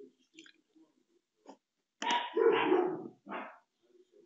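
A dog barks twice, a longer bark about two seconds in and a short one just after, over soft mouse clicks.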